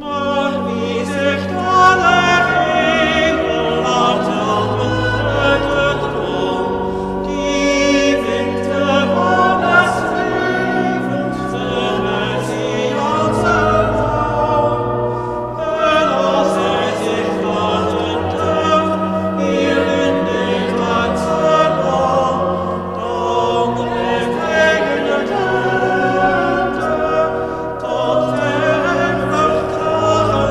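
Small mixed church choir singing a church song in long phrases, with short breaks for breath every six to eight seconds.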